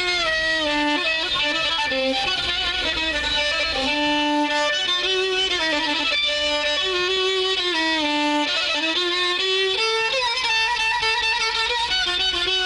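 Solo violin improvising a taqasim in an Arabic maqam: a single melodic line of held notes, slides and quick ornaments.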